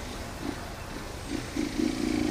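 Motorcycle engine running at low revs in slow city traffic, a steady low rumble.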